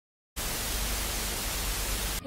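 TV static hiss, a steady even noise across all pitches that starts abruptly about a third of a second in.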